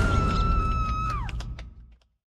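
Sound-design sting for a TV title card: a sudden heavy hit with a low rumble under a held high tone that bends downward and dies away about a second in, the rumble fading out by the end.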